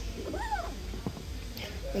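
A pet's single short call, rising and then falling in pitch over about half a second.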